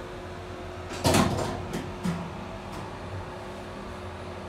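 A door being moved: a short scraping rattle about a second in, then a few lighter clicks.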